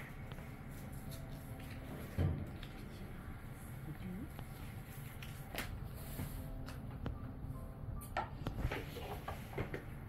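Kitchen knife and grilled crab-leg shells knocking and clicking on a wooden cutting board as the legs are cut up: one heavier knock about two seconds in and a run of light clicks near the end, over a steady low hum.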